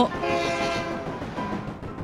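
Cartoon sound effect of a train horn: one steady, chord-like blast held for about a second and fading out, over a steady running noise of the train.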